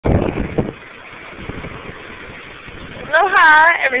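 Ocean surf breaking against rocky sea cliffs below, a steady wash of waves with a brief low rumble in the first half-second.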